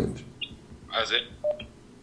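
A voice coming thinly through a mobile phone's loudspeaker on a call, with a brief beep-like tone about one and a half seconds in.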